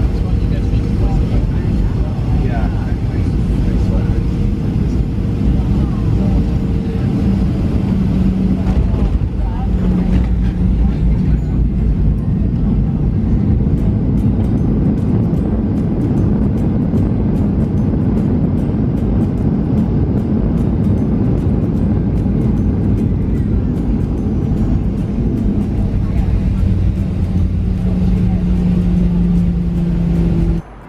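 Boeing 737 airliner's jet engines and cabin noise, a loud steady rumble with a few held tones, as the plane comes down to the runway and rolls along it.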